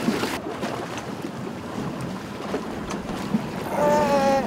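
A fishing boat at sea: a steady wash of water and boat noise, with wind on the microphone.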